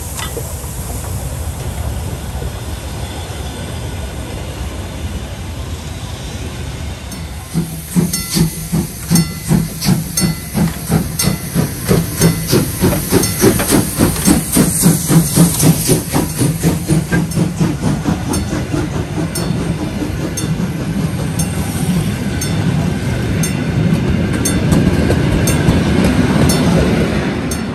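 DB class 64 tank steam locomotive running with its train. First a steady rumble of the passing train; then, about 8 seconds in, loud rhythmic exhaust chuffs at about three a second, with hissing steam, as the locomotive comes past. The coaches follow, their wheels rumbling and clicking over the rails.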